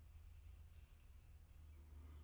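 Near silence: steady low room hum, with one faint, brief brushing hiss about three-quarters of a second in from a small brush sweeping gold flakes into a digital scale's cup.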